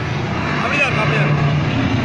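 Loud, steady sound from a dinosaur show's speakers filling a hall, with children's high voices rising and falling about half a second to a second in.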